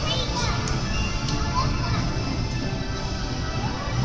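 Carousel music playing steadily, with children's high voices calling out over it.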